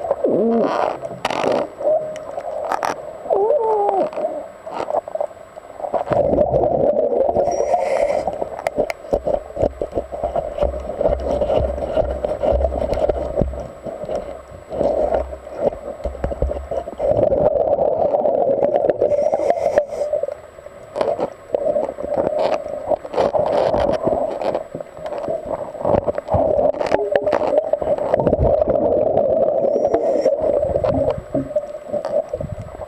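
Underwater sound of a scuba diver's breathing: exhaled bubbles gurgling and rumbling in surges a few seconds long with short pauses between, scattered clicks and knocks over it, and a low hum through the middle.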